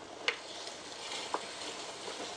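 Tabletop wet grinder running, its steel drum churning soaked urad dal into coarse batter with a steady hiss while a spatula scrapes the batter around. There is a sharp click near the start and a short ring of the spatula on the steel drum past the middle.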